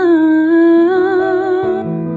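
Worship song: a woman's voice holds a long sung note with vibrato, stepping down to a lower held note, over sustained keyboard chords. A new, lower chord comes in near the end.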